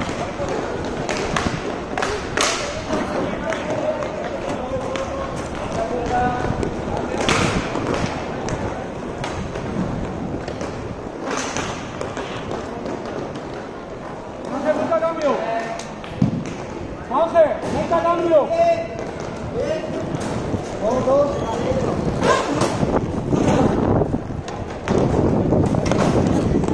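Inline hockey in play: sharp stick clacks on the puck several times, over the rolling of inline skates on a plastic sport-tile rink. Players shout calls to each other, loudest in the second half.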